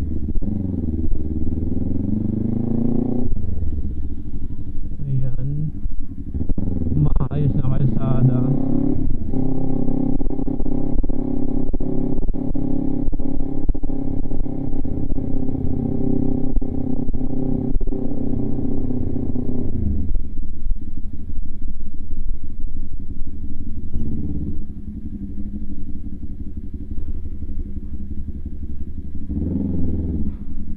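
Kawasaki Ninja 400's parallel-twin engine through an HGM aftermarket exhaust, ridden at low speed. The revs rise and fall, then climb sharply about seven seconds in. The engine holds a steady pull for about ten seconds, then drops back to a quieter, lower note for the rest.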